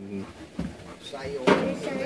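Metal grill tongs knocking against a barbecue grill grate while corn is set on it, one sharp clack about one and a half seconds in, among low voices.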